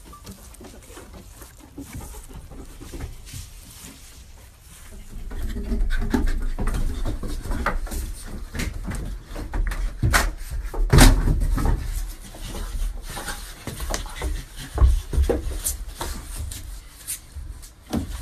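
Chimpanzees clambering on wooden stairs and railings close to the microphone: thumps, knocks and rubbing, louder from about five seconds in, with a few sharp knocks in the middle.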